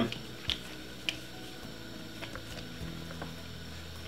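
Faint handling sounds of gloved hands pressing and spreading soft cornmeal batter on a banana leaf, with a few soft clicks, the clearest about half a second and a second in, over a low steady hum.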